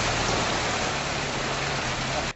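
A car tyre churning through deep floodwater, giving a steady rushing splash of spray.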